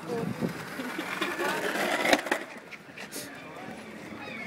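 Skateboard wheels rolling over asphalt as a small dog pushes and rides the board, with one sharp clack about halfway through. People talk around it.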